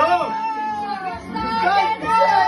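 A person calling out long, drawn-out 'yo' sounds, held high and bending in pitch, with other voices around.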